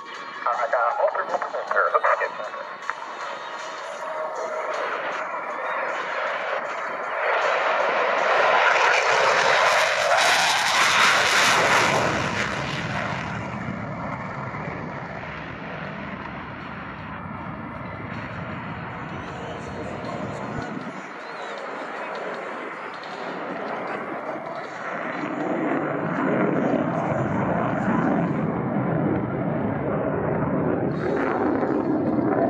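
Twin F414 turbofan engines of an F/A-18F Super Hornet at full afterburner as the jet passes low and climbs away. The jet noise builds to its loudest about ten seconds in, then carries on as a lower, steady rumble.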